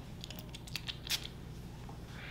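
Light handling sounds of a glass perfume bottle and a paper card: a few small clicks and rustles, with one sharper, brief scratchy sound about a second in.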